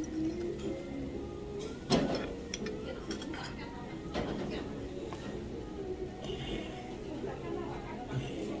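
Background music and indistinct voices, with dishes and chopsticks clinking now and then; a sharp knock about two seconds in is the loudest sound.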